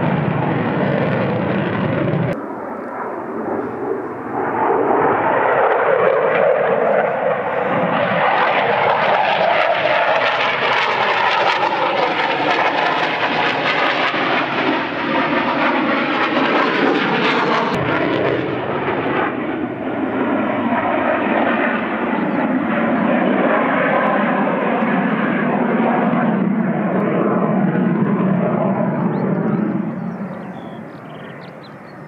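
Polish Air Force MiG-29 fighter's twin RD-33 turbofan jet engines, loud and continuous as the jet manoeuvres overhead, its tone slowly sweeping up and down as it passes. The sound changes abruptly about two seconds in and again a little past halfway.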